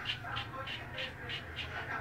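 1900 Superior safety razor with a Treet blade scraping through lathered stubble on the chin in short, quick strokes, about four a second.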